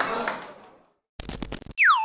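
Crowd and hall noise fades out, and after a brief silence an electronic outro sting plays: a short crackling burst of noise, then a loud swooping synthesizer tone that drops in pitch, holds and rises again.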